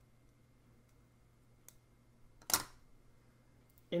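Plastic puzzle tiles handled and flipped on a table: a faint tick about one and a half seconds in, then a single short, sharp clack just past halfway as the tiles are set down.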